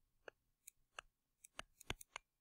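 Faint, irregular ticks of a stylus tapping a tablet screen while a word is handwritten, about eight in two seconds, the loudest near the end.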